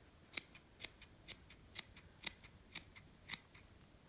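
Small scissors snipping off the loose yarn ends of a pom-pom, a short snip about twice a second.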